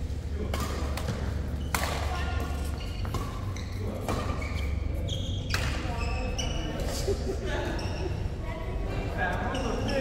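Badminton rally: sharp racket strikes on the shuttlecock, about six of them a second or so apart, echoing in a large hall over a steady low hum.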